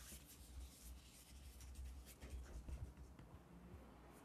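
Near silence: faint room tone with a steady low hum and a few faint scratchy ticks.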